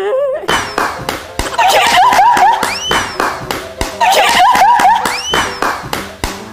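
A group of young women laughing hard, with high squealing laughs in repeated bursts over rapid hand claps.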